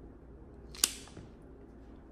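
A single sharp snip of an S.T. Dupont cigar cutter's blades closing through the cap of a cigar, a little under a second in, with a fainter click just after.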